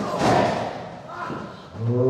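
A heavy thud of a body or blow landing in a wrestling ring, echoing in the large hall, with a fainter knock a second later. A man's voice, a shout or call, starts near the end.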